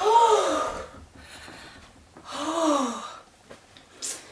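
A woman's two breathy vocal gasps, about two seconds apart, each rising and then falling in pitch.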